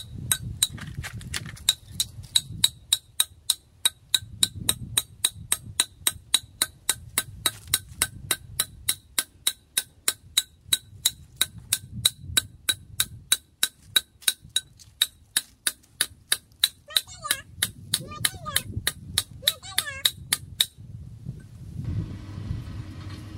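A large metal knife blade hammering the top of a thin wooden stake to drive it into the soil: a steady run of sharp, ringing knocks, about three or four a second, that stops about a second before the end.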